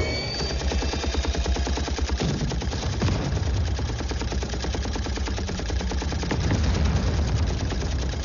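Hand-held multi-barrel rotary machine gun (minigun) firing one long unbroken burst, a rapid stream of shots over a heavy low rumble.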